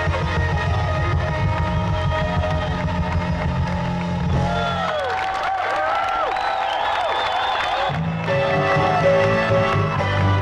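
Live rock band heard from the audience: piano, electric guitars, bass and drums playing together. About five seconds in, the bass and drums drop out for about three seconds, leaving bending high notes, and then the full band comes back in.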